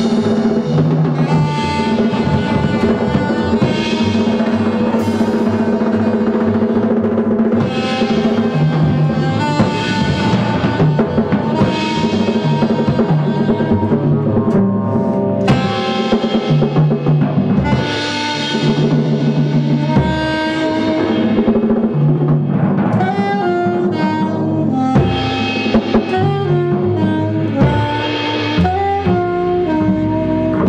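Live jazz trio playing: alto saxophone carrying a melody line over upright double bass and a drum kit with cymbals.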